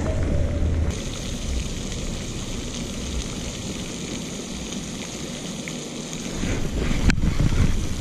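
Steady rushing noise of a pond fountain's spray splashing, with wind buffeting the microphone and one sharp click about seven seconds in.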